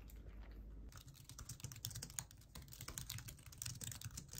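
Fingers typing quickly on a low-profile computer keyboard: a fast run of soft key clicks that starts about a second in.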